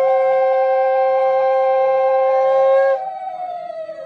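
Conch shell (shankha) blown as a ritual call in one long, steady blast that ends about three seconds in, with a second, slightly wavering higher tone sounding alongside it.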